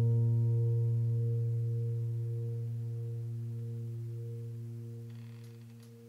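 Background piano music: one low held piano note rings out and fades slowly, dying away near the end.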